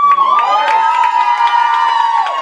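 Several high-pitched voices held in one long, loud shout of praise from worshippers, with scattered hand claps.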